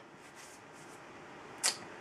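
Quiet room tone with a faint steady hiss, broken by one short, sharp noise about one and a half seconds in.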